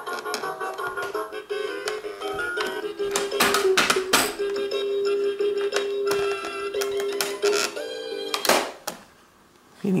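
An electronic toddler activity toy plays a synthesized tune while its lid is open, with a few plastic clicks from the toy being handled. The music cuts off suddenly near the end as the lid is shut.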